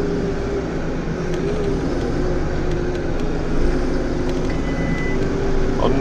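JCB Fastrac tractor's diesel engine running steadily as it drives, heard from a camera fixed outside on the cab door glass, with a steady hum that wavers slightly in pitch over road and wind noise.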